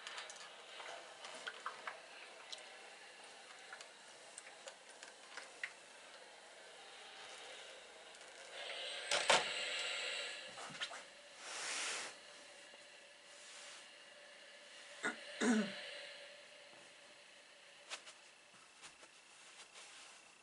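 Fabric and quilt batting being handled and smoothed on a padded table: light rustles and small clicks, two short bursts of noise about halfway through, and a sharp knock a little later.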